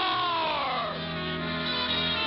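Orchestral cartoon score: a pitched glide falls over the first second, then settles into held notes.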